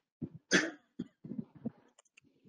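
A person coughs once, sharply, about half a second in, followed by a few softer, short throat sounds.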